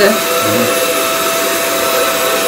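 Hutt DDC55 window-cleaning robot's suction fan running, a steady whirring hum with a constant whine that holds the robot to the glass.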